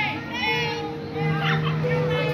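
Children talking and calling out, with background music playing in long held notes.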